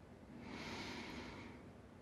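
A single deep breath, a faint airy rush lasting about a second: one of the slow, deep yogic 'complete breaths' that combine belly and chest breathing.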